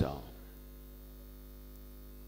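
A pause in a man's speech filled by a steady, low electrical hum, with the end of his last word dying away in the room's echo just at the start.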